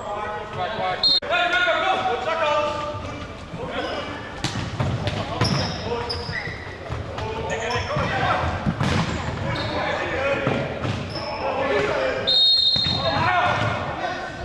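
Futsal play in a reverberant sports hall: players shouting and calling, the ball thudding off feet and bouncing on the wooden floor, and shoes squeaking. A short referee's whistle blast comes near the end.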